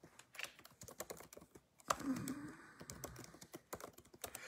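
Quiet, irregular clicking of typing on a computer keyboard, with one sharper key click about two seconds in.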